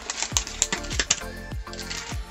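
Background music under a quick run of light clicks and taps from a small cardboard box being picked up and handled.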